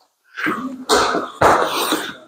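Three quick, forceful exhalations in a row, each about half a second long: a boxer breathing out hard while throwing punches.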